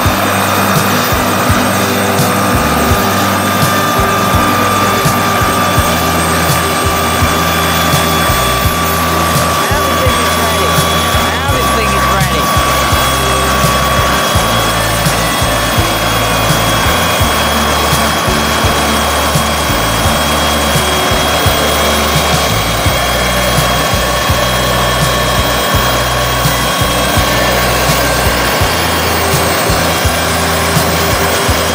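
Turbine helicopter running on the ground with its main rotor turning, a loud, steady high whine over the rotor's low sound.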